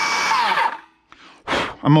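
Milwaukee M18 Fuel brushless circular saw run free with no cut: its high motor whine holds steady, then winds down and stops less than a second in.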